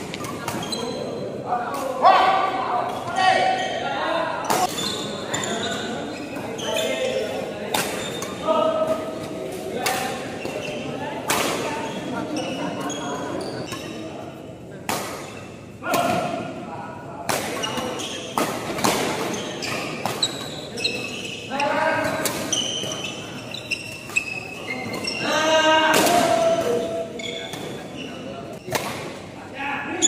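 Badminton rallies: racket strings hitting a shuttlecock in sharp cracks, echoing in a large hall, with players' voices and calls between the rallies.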